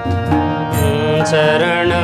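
Devotional bhajan: a man singing over harmonium, with tabla and dholak drumming a steady beat.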